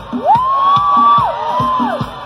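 Live band playing a steady percussion beat while a high voice lets out a long cry that rises, holds and falls, followed by a shorter second cry, with the crowd cheering.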